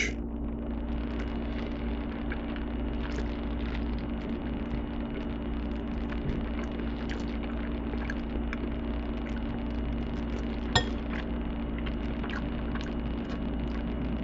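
Faint clinks and scrapes of a metal fork against a ceramic bowl while eating macaroni and cheese, with one sharper clink about eleven seconds in, over a steady low electrical hum.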